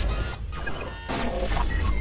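Electronic logo-intro sound design: a deep steady bass rumble under sweeping whooshes and scattered short glitchy electronic chirps and blips.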